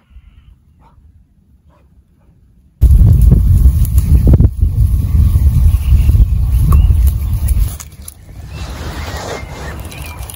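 Wind buffeting the microphone: a loud, low rumbling noise that starts suddenly about three seconds in and eases off to a weaker rush near the end.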